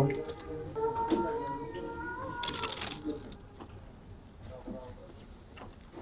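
A crisp papadam being bitten: a short crunch about halfway through, then quieter chewing. Background music with long held notes plays underneath during the first half.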